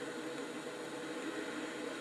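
Steady, even background hiss of room tone and recording noise, with no speech.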